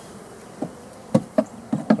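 Honeybees buzzing steadily around an open wooden hive, with about five sharp wooden knocks in the second half as hive boards are handled.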